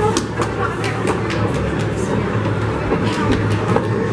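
Crowd hubbub in a large, echoing hall: many voices at once with music underneath and scattered sharp clicks.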